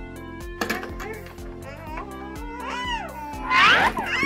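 Background music with a steady beat, over which a toddler makes gliding, squealing vocal sounds from about half a second in. The loudest is a rising squeal near the end.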